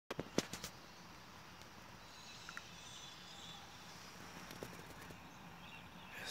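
Faint outdoor background heard from inside a car, with a few sharp clicks in the first second, a couple more a little after the middle, and faint short high chirps around the middle.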